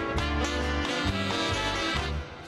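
Big band orchestra playing a Latin-tempo dance number, saxophones and horns over a steady bass and drum beat.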